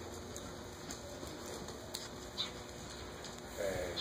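Horse walking on a lunge line over soft arena footing, with a few scattered sharp clicks, and a voice starting near the end.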